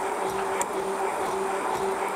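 Hand-held stick blender running steadily in a tall jug, puréeing boiled potatoes into a runny mash, its motor holding one even pitch.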